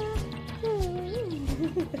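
A newborn baby's wavering whimper that slides down in pitch, over background music with a steady beat.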